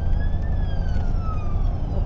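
An emergency vehicle's siren wailing, its pitch rising to a peak about half a second in and then falling slowly. Underneath is the steady low rumble of the vehicle driving.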